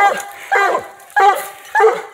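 Coonhound barking repeatedly, about two barks a second, at the base of a tree it has trailed a raccoon to.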